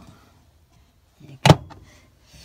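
A single sharp clack, about one and a half seconds in, as a door on a small Electrolux motorhome fridge is shut.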